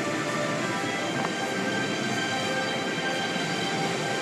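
Automatic car wash heard from inside the car: a steady rush of water spray and cloth strips sweeping over the car, with several steady machine whines held throughout.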